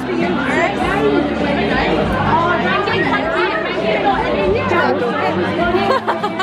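Many people chatting at once, overlapping voices filling a large function room.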